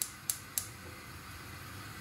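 Gas hob's spark igniter clicking three times as the burner knob is turned, then a steady low hiss from the lit gas burners.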